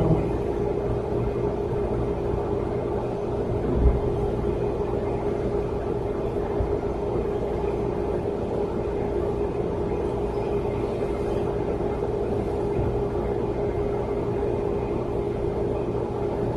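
Steady room noise: a low rumble and hum with one unchanging pitched tone held in it, and a single soft thump about four seconds in.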